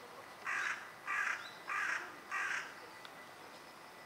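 A crow cawing four times in quick succession, harsh calls evenly spaced about two-thirds of a second apart.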